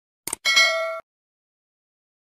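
Notification-style sound effect for a subscribe-button and bell-icon animation: a short click, then a bright ding with several ringing tones that lasts about half a second and cuts off abruptly.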